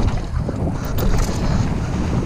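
Wind buffeting a bike-mounted camera's microphone while a mountain bike rolls fast over a wooden plank roller and down onto the dirt trail, its tyres rumbling and the frame rattling, with a sharp click about a second in.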